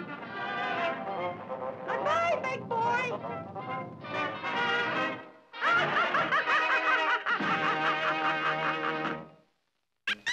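Cartoon music score with a voiced character sound over it, then, from about halfway in, Felix the Cat's hearty laugh over the music. The sound cuts to silence just before the end.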